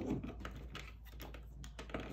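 A scatter of light clicks and taps as hands handle a small plastic dash cam on its mount and its cable.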